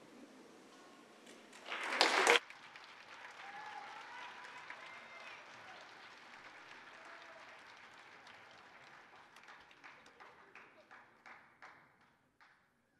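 Audience applauding a choir at the end of a song. A short loud burst comes about two seconds in, then steady clapping with some voices in the crowd, thinning to a few scattered claps that die away near the end.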